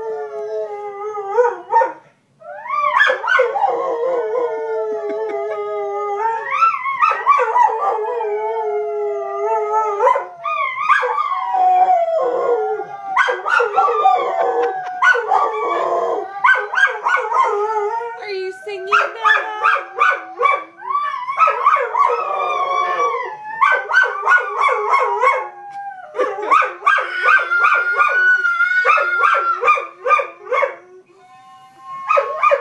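A dog howling along to a child blowing a plastic recorder: long wavering howls that rise and fall, mixed with short choppy recorder notes that come thicker in the second half.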